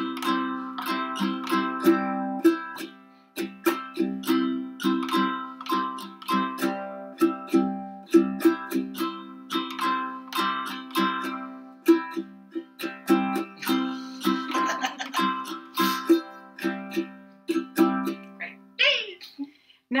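Two ukuleles taking turns strumming a C chord in a down, down, up, up, down, up pattern, one measure each, back and forth, with a brief voice near the end.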